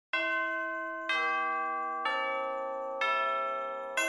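Music opening with four bell notes struck about once a second, falling in pitch step by step, each ringing on and fading under the next.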